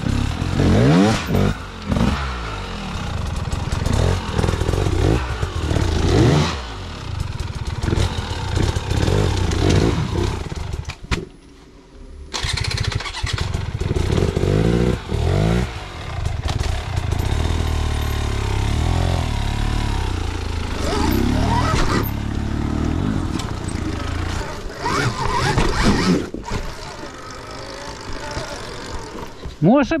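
Enduro motorcycle engine revving in repeated rising and falling bursts as a rider climbs a rough trail, with a brief lull about eleven seconds in.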